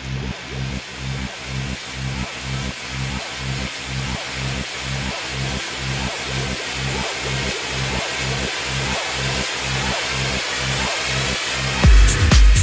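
Dark progressive house build-up: a bass note pulsing about twice a second under a rising white-noise sweep that grows steadily louder, with the full beat dropping back in right at the end.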